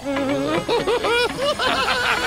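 Squeaky, sped-up cartoon voices of the cereal-square characters chattering and giggling in quick, high syllables that rise and fall several times a second.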